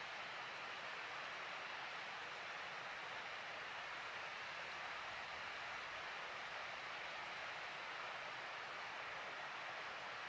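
Steady, even background hiss at a constant level, with no distinct sounds standing out.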